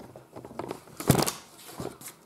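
Paper lottery scratch cards being handled, rustling and crinkling in a few short, irregular bursts, the loudest a little past the middle.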